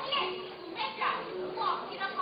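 Spoken dialogue between stage actors, with a faint steady tone coming and going behind the voices.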